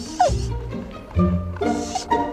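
Trailer music with a plucked low string line, over which a dog gives a short falling whine just after the start and a second short yelp near the end.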